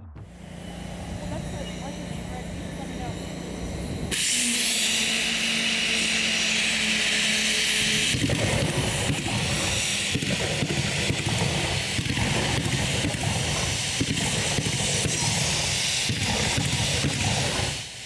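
Stadium pyrotechnics firing: spark fountains and smoke jets start a loud, steady hiss suddenly about four seconds in, after a quieter stretch with a low hum. From about eight seconds in, dense crackling joins the hiss, and both drop away just before the end.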